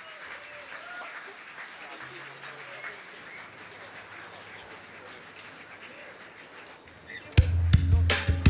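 Faint background murmur of voices, then, near the end, band music with a drum kit starts loudly and abruptly.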